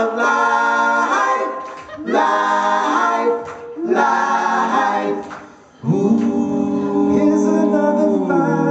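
Male a cappella vocal group singing close-harmony chords live: three short phrases with brief breaks between them, then one long held chord from about six seconds in.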